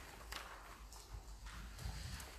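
Several faint, irregular knocks over a low steady room hum.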